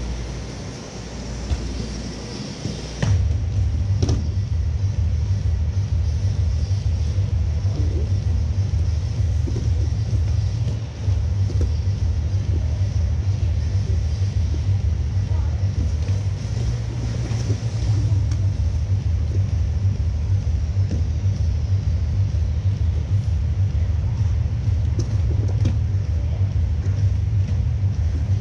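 A loud, steady low rumble that comes in sharply about three seconds in and holds, with faint music and voices under it.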